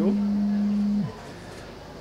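A man's voice holding one long, level-pitched vowel for about a second, then a pause with only faint room tone.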